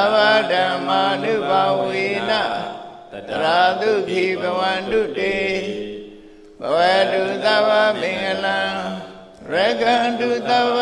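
A Buddhist monk's voice chanting Pali blessing verses in a slow, melodic recitation. It comes in three long phrases with short pauses for breath between them.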